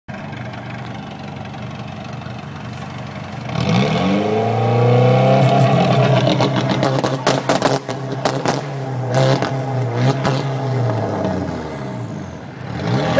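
A DSM's turbocharged 2.0-litre four-cylinder running through a 3-inch straight pipe with antilag. It idles, revs up about three and a half seconds in and holds high revs, with a rapid string of sharp bangs from the antilag a little past halfway. The revs then drop back near the end.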